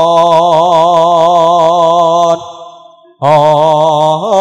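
Male campursari singer holding a long sung note with a slight waver over the band's fast, steady accompaniment. The sound fades away about two and a half seconds in and then comes back abruptly with the voice near the end.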